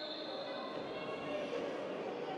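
A referee's whistle: a thin, high, steady tone trailing off during the first second or so, over faint hall room noise.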